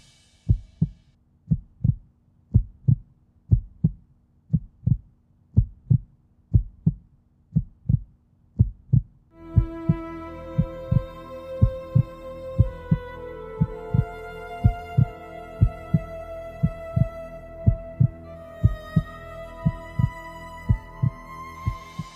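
Heartbeat sound effect: a steady double thump, lub-dub, about once a second. About nine and a half seconds in, a slow music bed of long held notes comes in under the beats.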